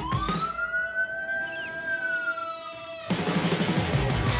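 A single siren wail rising quickly, then sliding slowly down, over a steady held note, used as a sound effect in a rock intro theme. The band drops out for it and comes back in with drums and guitar about three seconds in.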